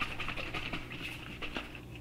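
A 1.5-litre bottle of water being shaken to mix in liquid plant food: a rapid, irregular patter of liquid sloshing inside it, fading toward the end.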